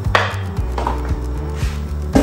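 Short scraping clatter of kitchen utensils just after the start, with lighter knocks about a second in, over background music with a steady bass.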